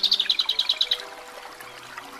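A songbird trilling: a fast run of high notes, about ten a second, that stops about a second in, over soft sustained background music.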